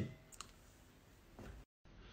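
Near silence: faint room tone with one small click about half a second in and a soft low noise around a second and a half, then a brief moment of dead digital silence near the end.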